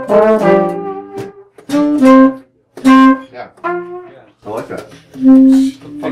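A small horn section of trumpet, tenor saxophone and trombone playing together with an acoustic guitar. It holds one chord for about a second and a half, then plays short punched chords about a second apart, and the last one is held briefly before they stop near the end.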